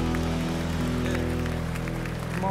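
Keyboard holding a steady sustained chord with a low bass note underneath, no beat.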